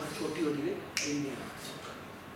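A man's voice speaking briefly, with one sharp click about a second in.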